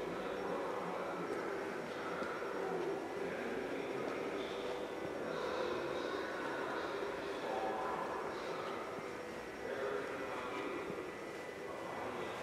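Steady room ambience of a large indoor hangar: an even background hum with faint, indistinct sounds in it.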